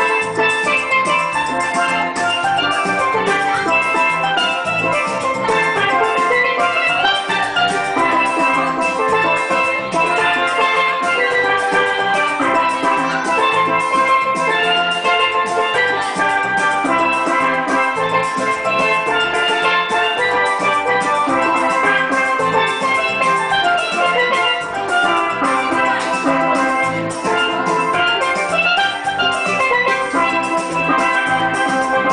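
A steel band playing: steelpans sounding quick runs of ringing, pitched notes over a steady drum beat, at an even, full level throughout.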